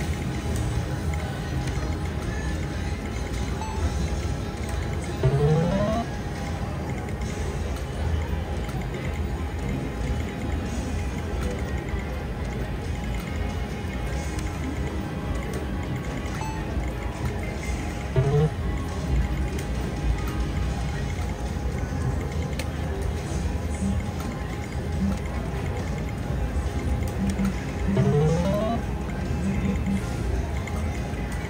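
Casino-floor ambience of electronic gaming-machine music and jingles, with a short rising electronic sweep about five seconds in, again about eighteen seconds in and near the end.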